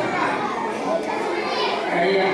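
Children's voices chattering in a large hall, mixed with a man speaking over a microphone.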